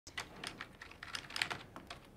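Typing on a computer keyboard: quick, uneven key clicks, about six a second.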